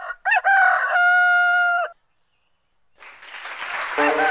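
A single rooster crow: a quick rising start, then one held call, lasting under two seconds. After a short pause, a wash of noise swells up near the end.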